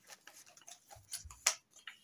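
Manila paper being handled and folded into small triangles: light, irregular paper clicks and crinkles, the sharpest about one and a half seconds in.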